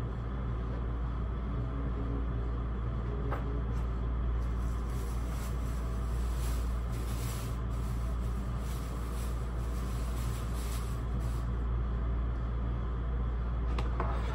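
A steady low hum of room noise, with faint scattered clicks and rustles of someone moving about and handling things.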